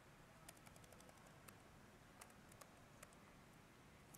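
Faint, irregular clicks of a laptop keyboard being typed on, over near-silent room tone.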